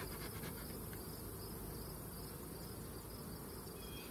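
Honeybees buzzing over an open hive, a steady low hum, with crickets chirping faintly and quickly in the grass.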